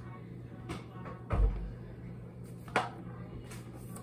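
Kitchen handling knocks while a bottle of vegetable oil is fetched from a low cupboard: a few light clicks and one heavy thump about a third of the way in, as of a cupboard door or the bottle being set down. A steady low hum runs underneath.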